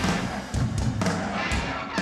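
Hard rock band playing live through a PA, an instrumental stretch with electric guitars, bass and drums, marked by heavy accented drum and band hits about twice a second.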